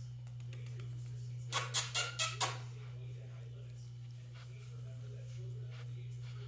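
Five sharp clicks in quick succession about a second and a half in, over a steady low hum.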